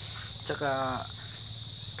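Steady high-pitched chorus of insects, with a few words of a man's speech about half a second in.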